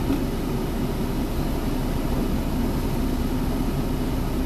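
Steady drone of a vehicle's running engine heard inside the cab, with a faint held hum under it.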